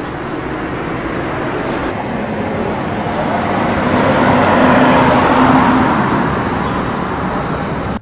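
A road vehicle passing by: steady traffic noise that builds to its loudest about halfway through and then fades.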